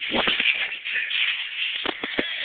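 Scuffling of two people wrestling on the floor, bodies and clothing rubbing, with a few thumps: one near the start and two in quick succession near the end.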